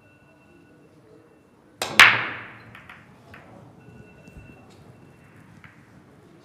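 Break-off shot in Chinese eight-ball (heyball). The cue tip clicks on the cue ball, and a split second later the cue ball smashes into the racked balls with a loud crack that rings away. Scattered lighter clicks follow as the balls collide with each other and the cushions.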